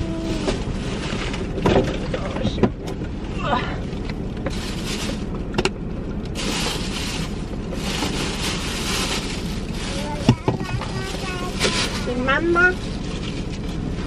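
Rustling of plastic bags and wrappers, with occasional sharp clicks and knocks, as trash is gathered by hand from inside a car. A steady hiss runs underneath.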